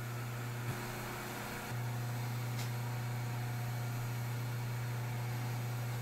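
Knee mill's spindle motor running steadily, turning an edge finder at about a thousand rpm: a low, even hum that steps up slightly a couple of seconds in, with a faint click just under a second in.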